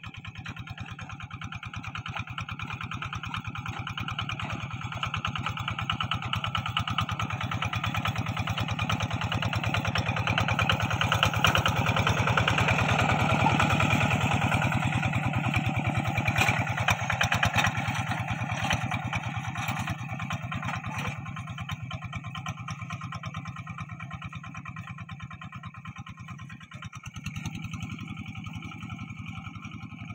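Two-wheel walking tractor's single-cylinder diesel engine chugging steadily under load as it works a wet rice paddy. It grows louder toward the middle as it passes close, then fades as it moves away.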